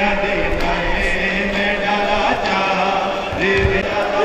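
Male voices chanting a Muharram nauha (Shia mourning chant), each note long and held.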